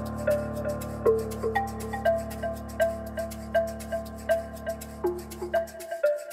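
Slow improvised cinematic keyboard music: a repeating pattern of notes, about three a second, over a sustained low drone that stops just before the end.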